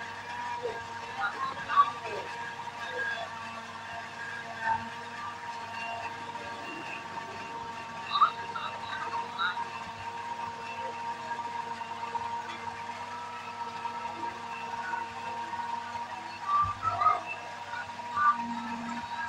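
Faint voices in the background over a steady electronic hum.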